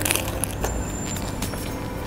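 Crisp lettuce leaf wrapped around a date being bitten and chewed: a crunch at the start, then scattered crunching clicks, over a steady low background hum.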